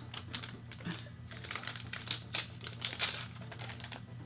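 Paper mail packaging being handled and opened by hand, crinkling and rustling in quick, irregular crackles.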